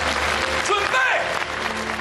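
Studio audience applauding over steady background music.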